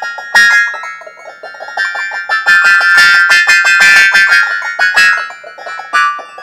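Electronic keyboard music with a piano-like sound: a fast, dense patter of short notes under held high tones, thickest and loudest in a cluster around the middle.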